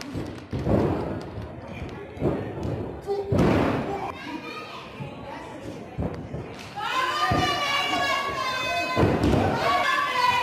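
Wrestlers' bodies hitting the ring canvas and ropes: a series of heavy thuds, echoing in a large hall. A voice shouts out in long calls from about seven seconds in, and again at the end.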